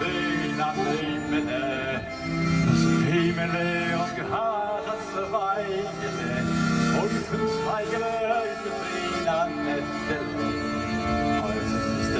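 Accordion and saxophone playing a Yiddish song in klezmer style, held chords under a wavering melody line.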